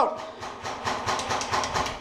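Paintball markers firing in a rapid string of sharp pops, about six or more a second.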